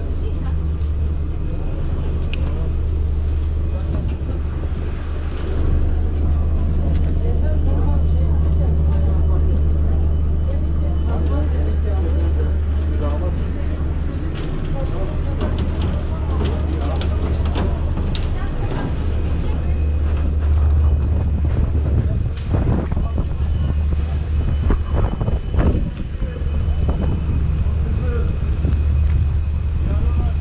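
Steady low drone of a passenger ferry's engines, with people's voices chattering in the background.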